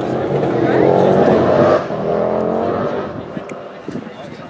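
A car engine running, loud for the first couple of seconds and then fading away.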